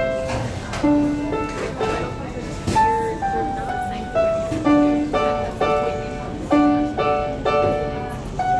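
Upright piano being played: a melody of single notes, then a repeated chord pattern struck about twice a second in the second half.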